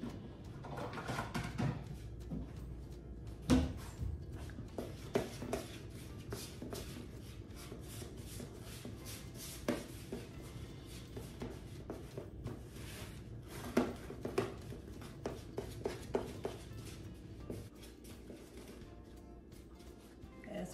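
Background music under the clicks, taps and scrapes of a spatula mixing a crumbly streusel of butter, sugar and flour in a mixing bowl. A sharp knock comes about three and a half seconds in.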